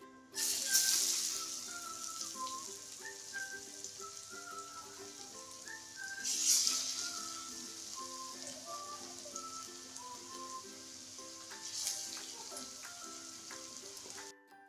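Chana dal vadas dropped one at a time into hot oil in a steel kadhai. Each drop sets off a loud burst of sizzling that settles into steady frying. There are three drops: about half a second in, midway, and near the end.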